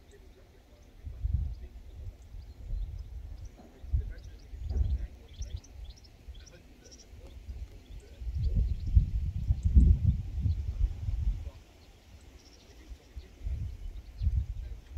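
Wind buffeting the microphone in uneven gusts, strongest from about eight to eleven and a half seconds in, with faint high chirps in the background.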